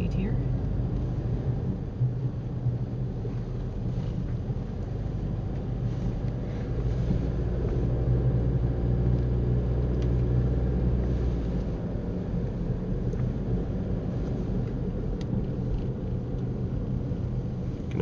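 Car cabin noise while driving slowly: a steady low rumble of engine and tyres heard from inside the car, heavier for several seconds in the middle.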